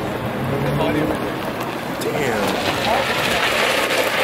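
A car engine running at a low steady idle, its hum fading about a second in, under a constant wash of crowd voices and outdoor noise.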